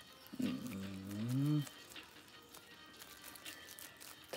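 A low voice sings one drawn-out note that dips and then rises in pitch for just over a second, over faint background music.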